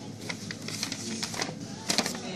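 A sheet of paper being unfolded and handled, crackling and rustling in a string of sharp crinkles, the loudest near the end.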